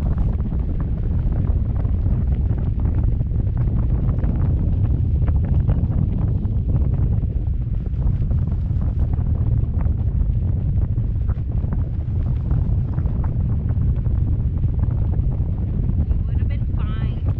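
Wind buffeting the microphone of a camera on a parasail's tow bar in flight: a steady low rumble with faint crackles.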